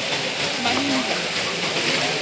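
A steady, even hiss of background noise, with faint voices talking in the background about half a second in.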